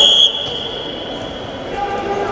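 Referee's whistle blown to start a wrestling bout: one sharp, high-pitched blast, loud at first and then held more softly for well over a second.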